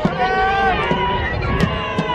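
Several voices at a baseball game shouting long, drawn-out calls that fall away at the ends, with a sharp click about one and a half seconds in.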